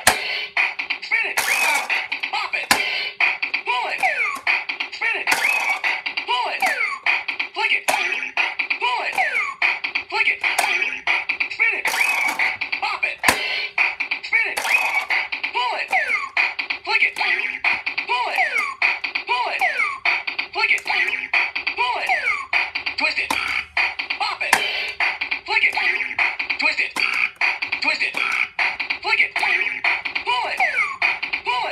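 Bop It Extreme toy in a game: its electronic beat plays with a fast, regular click, and a recorded voice calls out commands such as "flick it", "twist it" and "bop it" over short electronic tones.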